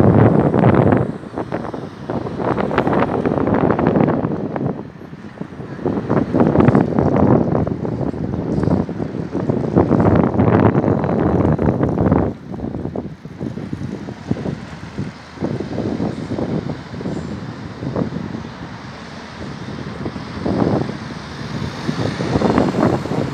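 Street noise from road traffic, with wind gusting on the microphone in uneven surges that rise and fall every second or two.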